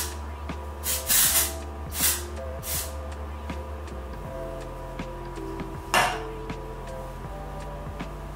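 Aerosol texturizing hairspray sprayed in short bursts, several in the first three seconds and one more about six seconds in, over background music with a steady bass line.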